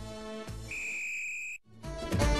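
The music of a TV station ident tails off, and a steady high electronic tone holds for under a second. It cuts off suddenly, and after a brief gap new upbeat music starts at the very end.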